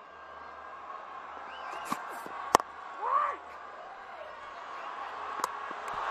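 Cricket stadium crowd noise, slowly building. A sharp crack of bat on ball comes about two and a half seconds in, followed at once by a short shout. A second, lighter sharp knock near the end fits a direct-hit throw striking the stumps.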